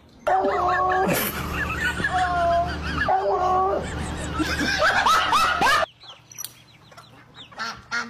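A dog howling with its head raised, long drawn-out cries that bend up and down, a sort of 'hello'. The howl cuts off suddenly about six seconds in, leaving quieter bird chirps from barnyard fowl.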